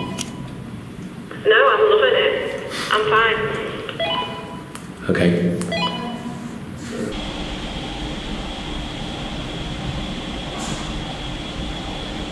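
Handheld two-way radio squawking: a thin, garbled voice comes over the walkie-talkie in a few short bursts. About seven seconds in, this gives way to a steady electrical hum with a faint high whine.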